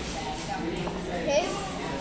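Soft voices and background chatter in a fast-food restaurant, with a child's voice murmuring briefly in the middle.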